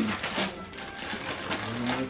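Wrapping paper crinkling and tearing as a gift is unwrapped by hand, in quick crackly rustles.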